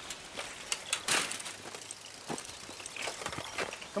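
Bicycles clattering and rattling over rough grass, with a series of short knocks and a louder clatter about a second in, over a steady outdoor hiss of rural air.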